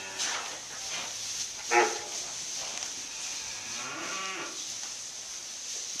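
Calves mooing: one short, loud moo about two seconds in, then a longer, fainter moo around four seconds.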